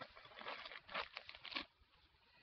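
Plastic wrappers of Playtex Gentle Glide tampons crinkling as they are handled, a run of irregular crackles that stops about one and a half seconds in.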